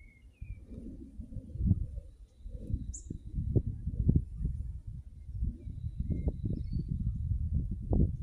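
Gusty low rumble of wind buffeting the microphone outdoors, with faint scattered bird chirps above it.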